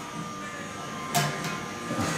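Quiet room tone with a faint steady hum, and a short vocal sound a little after a second in.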